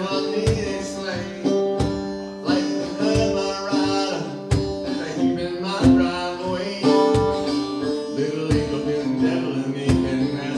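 A man singing live, accompanying himself on a strummed acoustic guitar.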